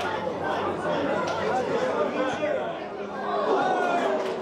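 Several voices calling and shouting over one another on a football pitch during play: players and bench chatter, with no commentary.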